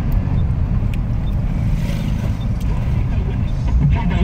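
Car cabin noise while driving: a steady low rumble of the engine and tyres on the road, heard from inside the car.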